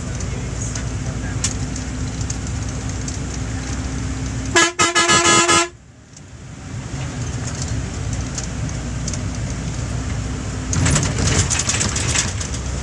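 Steady bus engine and road noise heard from inside the cabin on a wet highway, broken about four and a half seconds in by a loud vehicle horn honking for about a second. Near the end the road noise grows rougher and louder, with scattered ticks.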